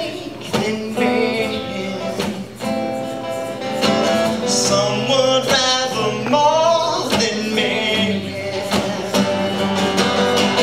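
Live acoustic guitar playing with a man's voice singing over it.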